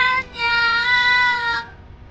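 A child's voice calling out "A-niang" (Mother) in one long, high-pitched cry, held for over a second before it fades, over soft background music.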